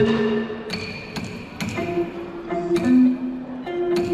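Ca trù ensemble playing: a đàn đáy long-necked lute plucking held low notes that step between pitches, with sharp wooden clicks of the phách clapper struck every half second to a second.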